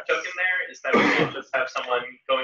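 A person's voice talking indistinctly, too unclear for the words to be made out.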